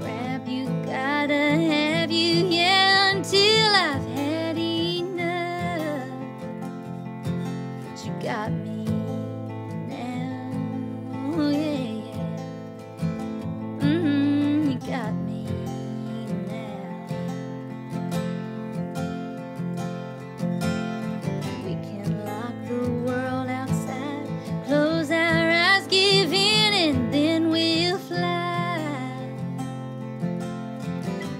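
A woman singing a slow country ballad over acoustic guitar accompaniment, her voice carrying a wavering vibrato on long held notes. The fullest sung phrases come at the start and again near the end, with quieter lines in between.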